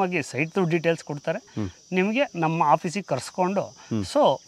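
A man's voice talking, with a thin, steady high-pitched whine underneath.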